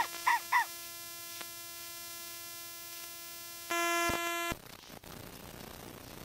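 LeapFrog My Pal Violet talking plush puppy's speaker playing a steady held electronic tone, with two short high chirps at the start. Near the fourth second the tone comes louder for under a second, then cuts off, leaving faint hiss.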